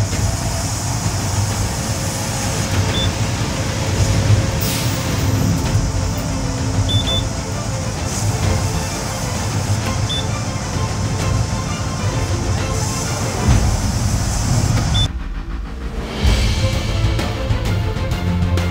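Band sawmill running steadily while a frozen, water-filled cottonwood cant is fed past the blade, with a short high beep every three or four seconds. About fifteen seconds in the machine sound drops away and background music comes in.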